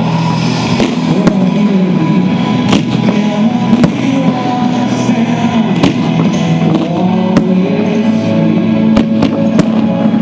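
Aerial firework shells bursting with sharp bangs every second or two, three in quick succession near the end, over music playing throughout.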